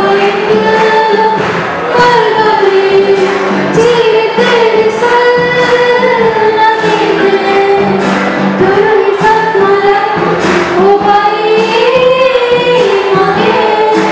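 A group of teenage girls singing a song together into microphones, with instrumental accompaniment and a light recurring beat under the voices.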